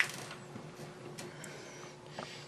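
Quiet workshop room tone with a steady low hum, and a few faint small clicks and rustles of hands handling tiny plastic model parts and a screw.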